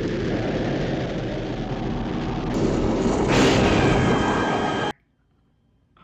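Film sound effect of a spacesuit thruster igniting and firing: a loud, steady rushing noise that swells about three seconds in and then cuts off abruptly.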